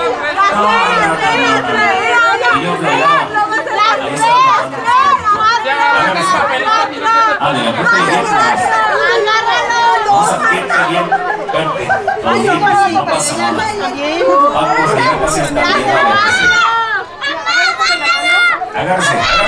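Several people talking over one another around a party table: steady crowd chatter with no single voice standing out.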